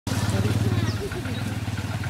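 An engine idling steadily in a fast, even pulse, with people talking in the background.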